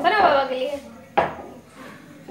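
A rolling pin knocks once against a stone rolling board about a second in, as a small child rolls out a roti. A small child's voice sounds briefly at the start.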